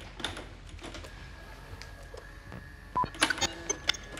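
Buttons clicking on an old electronic console, then a faint steady high tone, a short beep about three seconds in, and a cluster of crackly clicks as a recorded playback starts.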